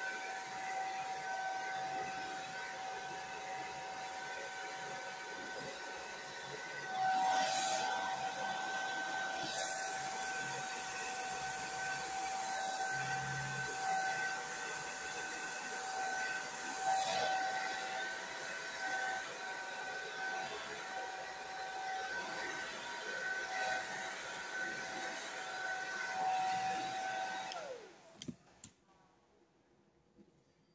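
Handheld hair dryer running steadily, a rush of air with a high motor whine, swelling louder twice as it moves closer. Near the end it is switched off and the whine falls away as the motor spins down.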